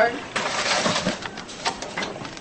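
Paper cards rustling and shuffling as a hand rummages through them in a plastic bucket. There is a short scratchy crackle with a few small clicks.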